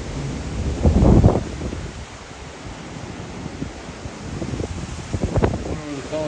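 Gusty wind blowing across a phone microphone, with a strong buffeting gust about a second in and shorter ones near the end, over a steady rush of wind.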